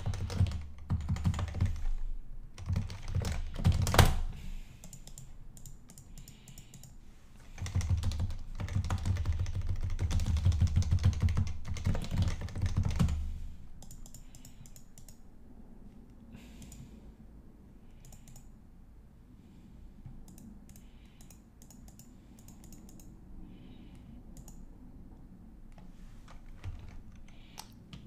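Typing on a computer keyboard: runs of quick keystrokes with dull thuds for the first dozen or so seconds, then only scattered, quieter key presses.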